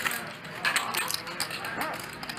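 Poker chips clicking together in quick runs as a player handles his stack, with soft background music underneath.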